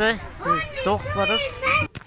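A man speaking, cut off abruptly just before the end.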